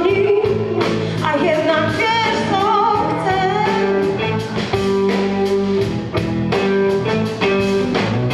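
Live blues-rock band playing a song: a woman singing over two electric guitars, electric bass and a drum kit, with a steady drum beat.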